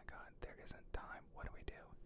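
A man whispering faintly, without voice, with a few short sharp clicks in between.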